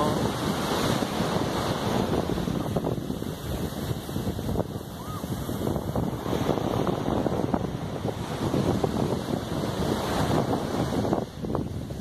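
Wind buffeting a phone microphone, rising and falling unevenly, over the steady wash of surf on a sandy beach.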